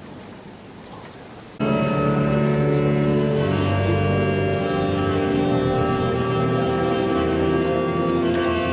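Pipe organ coming in abruptly about one and a half seconds in and holding full sustained chords over a deep pedal bass.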